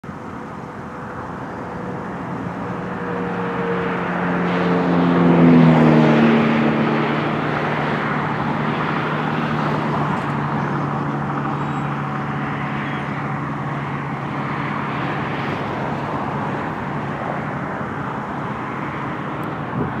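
A motor vehicle passing, its engine pitch falling as it goes by about five seconds in, loudest at that point. A steady low hum and road noise carry on afterwards.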